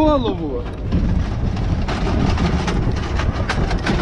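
Military vehicle with soldiers riding on top, driving over rough ground: a heavy low engine and road rumble, with irregular knocks and rattles from about two seconds in. A voice trails off at the start.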